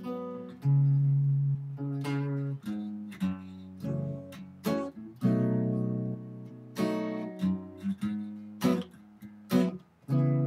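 Electric guitar playing a chord progression in the key of E: about a dozen strummed and picked chords, each left to ring before the next change.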